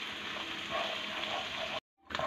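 Ginger-garlic paste and onion paste frying in hot ghee in a karahi, a steady sizzle of bubbling fat. The sound cuts off suddenly near the end.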